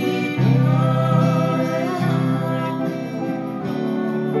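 Digital piano playing slow, sustained chords, the bass note changing about every one and a half seconds, with a voice singing over it.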